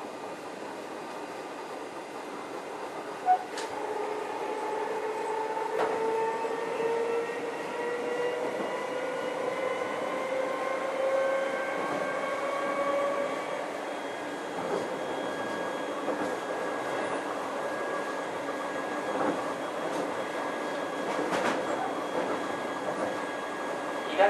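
Keio 7000-series chopper-controlled electric train car running, heard from inside the car. Its motor whine rises steadily in pitch as it gathers speed, then holds steady, over the rumble of the wheels with a few sharp knocks.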